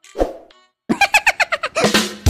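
Edited-in sound effects: a pop near the start, then from about a second in a quick run of bright pitched notes, about eight a second.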